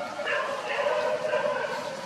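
Baby long-tailed macaque crying: a string of high, wavering cries that break and change pitch.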